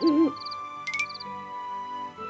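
A cartoon owl sound effect hooting once with a wavering pitch right at the start, over soft background music. A brief high sparkle sound follows about a second in.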